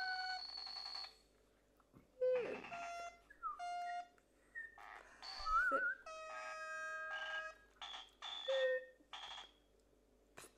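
A string of short electronic tones and beeps at different pitches, most held dead steady, one warbling and one sliding down, with short gaps between them.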